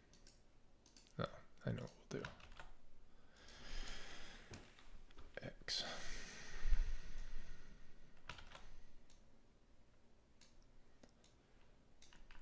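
Computer keyboard and mouse clicks, scattered and irregular, with a couple of louder noisy rustles in the middle.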